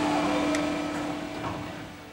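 Plastic injection moulding machine running with a steady mechanical hum, fading off towards the end.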